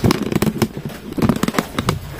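Rapid, irregular sharp knocks and crackles from cracked fruit pits and a plastic wrapper being worked by hand on a stone slab, as the pits are broken open for their seeds.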